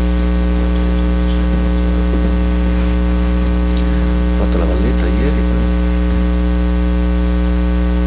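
Loud, steady electrical mains hum with a stack of overtones, carried through the room's microphone and sound system. Faint, indistinct voices come up briefly about halfway through.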